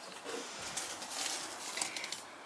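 Faint rustling and handling of paper seed packets over a low background hiss, with a few slightly sharper crinkles near the end.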